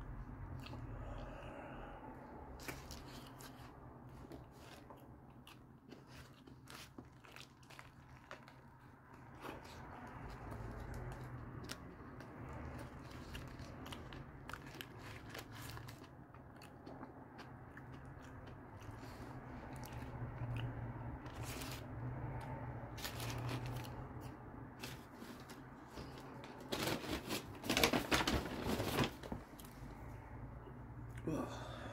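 Close-up chewing of a Whopper burger: soft wet mouth clicks and smacks scattered throughout. Near the end comes a louder burst of crinkling as the burger's paper wrapper is handled.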